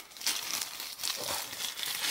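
Paper packaging rustling and crinkling as a gift package is opened by hand.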